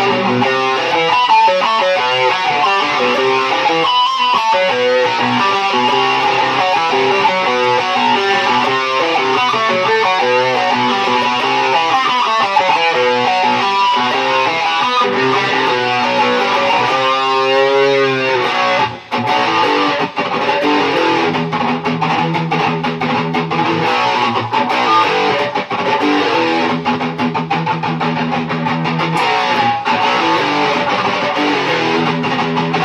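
Sunburst Stratocaster-style electric guitar played through Peavey combo amps, a continuous run of picked notes. About seventeen seconds in, the notes waver up and down for a second or so, with a short break just after. It then settles into steadily repeated picked notes.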